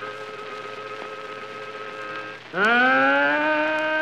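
Country blues harmonica on a worn late-1920s 78 record: a soft held note, then about two and a half seconds in a loud wailing note that bends up from below and is held. Steady record surface hiss sits underneath.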